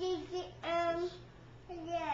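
A small boy's high-pitched, wordless, sing-song voice: a few short held notes, then a falling note near the end.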